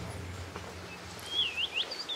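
A bird calling, a few quick sweeping whistled notes starting a little over a second in, over faint outdoor ambience and the fading tail of background music.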